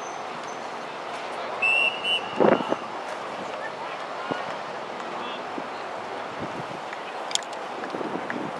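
A referee's whistle blown in one short high blast about a second and a half in, with play coming to a stop, followed at once by a short loud sound; spectators' voices and open-air ambience run underneath.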